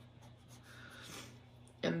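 Faint strokes of a marker pen writing figures on paper, swelling softly around the middle.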